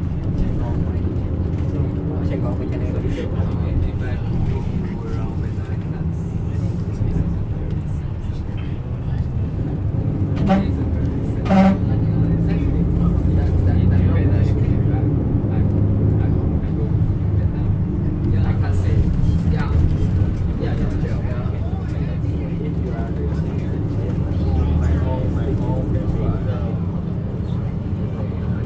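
Low, steady engine and road rumble of a bus heard from inside its cabin as it drives through city traffic, with two short sharp clicks about a second apart near the middle.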